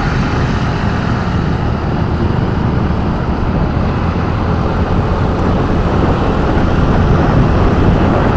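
Steady rush of wind and road noise while riding a motorbike in town traffic, heaviest in the low end and growing a little louder in the second half.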